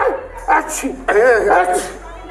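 A man's yelping, whimpering cries while he is held down: several short cries whose pitch wavers up and down, the longest about a second in.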